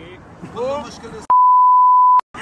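A man speaking, then about two-thirds of the way in a loud, steady, single-pitched beep lasting about a second, with all other sound cut out beneath it: an edited-in censor bleep over the speech.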